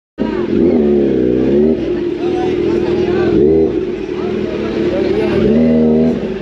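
A Kawasaki Z900's inline-four engine being revved at a standstill, its pitch rising and falling in several blips, with people's voices close by.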